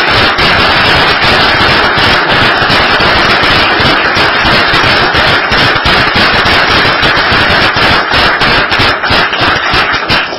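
Loud, dense applause from a room full of people, many hands clapping at once.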